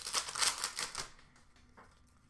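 Trading cards being flicked through by hand: a quick run of crisp clicks and rustles that stops about a second in.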